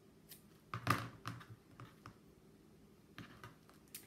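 Scissors snipping through satin ribbon ends: a handful of short, irregular snips and clicks, the loudest about a second in.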